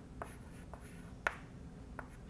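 Chalk tapping and scraping on a chalkboard in a few short, sharp strokes, the loudest a little past halfway.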